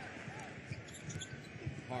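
Basketball dribbled on a hardwood court, a run of low thuds over steady arena crowd noise.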